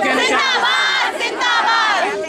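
A crowd of women shouting a protest slogan together, in two long high-pitched shouts.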